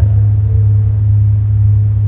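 Steady, loud low electrical hum, the mains hum carried by the talk's recording and amplification, unchanged through a pause in speech.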